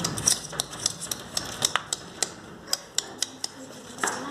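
A pinscher's claws tapping and scratching at a glass door: an irregular run of sharp clicks.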